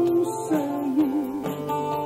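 A woman singing into a microphone over guitar accompaniment. About half a second in she holds a note with vibrato.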